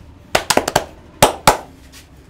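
Sharp cracking pops from a barber's hands working the skin of a bare back during a skin-cracking massage: a quick run of about five, then two more a quarter second apart.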